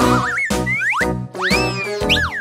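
Upbeat children's background music with a steady beat, overlaid with cartoon sound effects: quick rising whistle-like glides in the first second, then a longer one that rises and falls.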